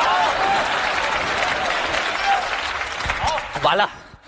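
Live studio audience applauding, the applause fading toward the end. A man's voice cuts in just before it ends.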